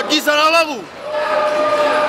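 A drawn-out shout from ringside at a Muay Thai bout, falling steeply in pitch over about half a second, followed later by a single steady held tone.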